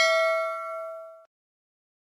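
Notification-bell sound effect, a single bright ding ringing out and fading away over about a second, then cutting off.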